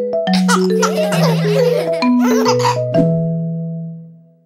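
Short closing logo jingle of bright mallet-instrument notes over a bass line, with a burst of children's laughter and voices in the middle; it ends on a final chord struck about three seconds in that rings out and fades.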